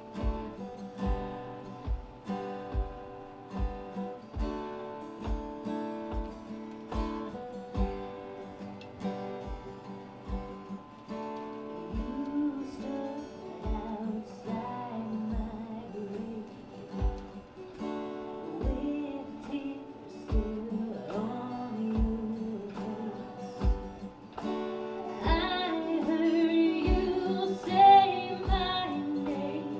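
Live acoustic guitar strummed with keyboard accompaniment, over a steady low beat about once a second: the intro of a song. A woman's singing voice comes in about halfway through and grows louder near the end.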